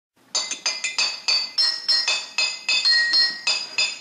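Intro jingle made of bright, glassy ringing notes struck in quick succession, about five a second, each note ringing briefly before the next. The pitch changes from note to note, so the notes form a tinkling melody.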